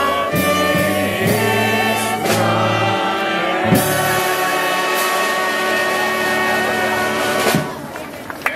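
A crowd of carolers singing a Christmas carol together, accompanied by an electric bass guitar, holding long notes. The singing stops a little before the end.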